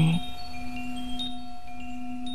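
Ambient sound-healing music: a steady drone with sparse, soft high chime pings, a few in two seconds.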